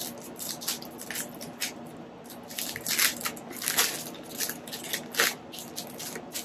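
A paperboard product box being opened by hand and its clear plastic wrapping handled, giving a string of short, irregular crackles and rustles.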